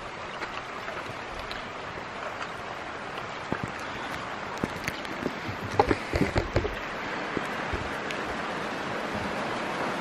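Heavy rain falling steadily. A cluster of short knocks and clicks comes around the middle, loudest about six seconds in.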